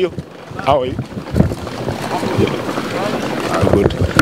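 Wind buffeting a handheld microphone outdoors, building to a steady rush about a second and a half in, with scattered voices of people nearby.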